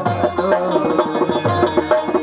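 Live folk music: a harmonium melody with steady drum strokes keeping the rhythm.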